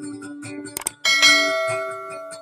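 Subscribe-button overlay sound effect: a quick double click about three quarters of a second in, then a bright bell ding that rings and fades. It plays over acoustic guitar being plucked.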